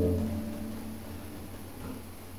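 A strummed Bm7 chord on a nylon-string classical guitar ringing on and slowly dying away.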